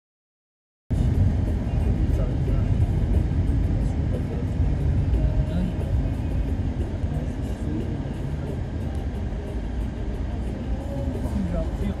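Engine and road rumble heard inside a moving vehicle's cabin as it drives along a worn paved road, starting about a second in and running steadily.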